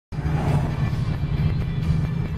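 Steady low rumble inside a moving car's cabin, with music playing.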